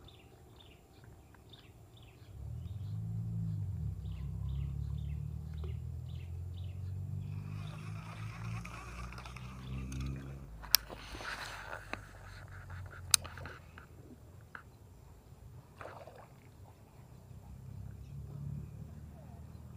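A low engine drone comes in about two seconds in, holds steady for some eight seconds and fades, with faint repeated high chirps over its start. Later come two sharp clicks about two and a half seconds apart.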